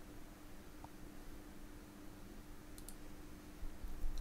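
Quiet room tone with a faint steady hum, and a couple of faint short clicks about three seconds in.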